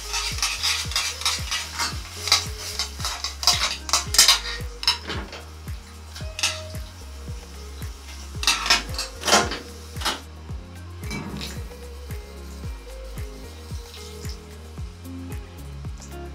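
Metal tongs clinking and scraping against a metal frying pan as spaghetti is tossed in tomato sauce, with a light sizzle from the pan. The clatter is busiest in the first few seconds, has a few louder strikes about halfway through, and then thins out over soft background music.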